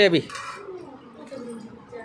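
Sugar being stirred by hand into water in a pot, heard faintly after a short spoken word.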